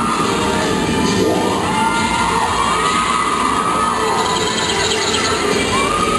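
Spectators cheering and screaming at a cheerleading routine, with several long high shrieks that rise and fall in turn, over the routine's music.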